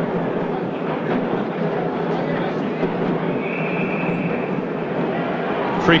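Stadium crowd at a rugby match, a steady hubbub of many voices.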